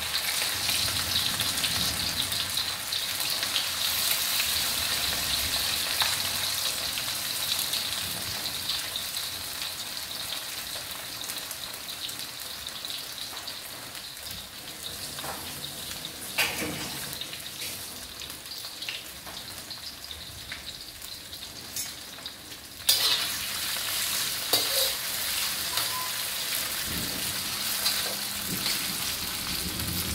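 Pork pieces sizzling in hot oil in a stainless steel wok, a steady hiss that eases off through the middle and grows suddenly louder about three-quarters of the way in. A utensil stirring the meat gives a few short clicks and scrapes against the wok.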